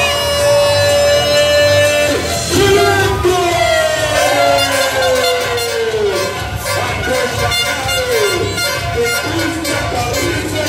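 Loud music with a long steady held tone for the first two seconds, then slow falling, sliding tones.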